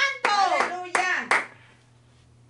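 A man's voice calls out about four short exclamations in quick succession, each falling in pitch, mixed with sharp handclaps. They stop about three-quarters of the way through, leaving only a low steady hum.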